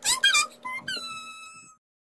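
Music with high, squeaky, gliding pitched tones, the last one held and falling slightly before the sound cuts off suddenly near the end.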